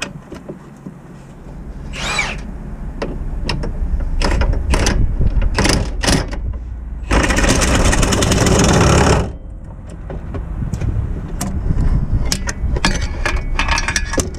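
A power tool runs a socket on a gearbox bolt in one loud burst of about two seconds, a little past the middle. Scattered metallic clicks and knocks of the socket and extension come before and after it.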